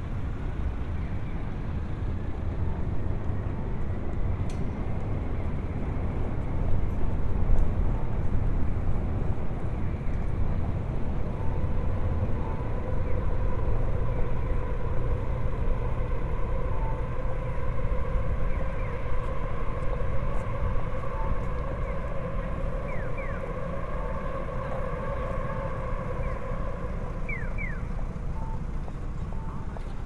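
Busy city street ambience: steady low rumble of road traffic, with a humming tone joining in from about twelve seconds in and a few short chirps near the end.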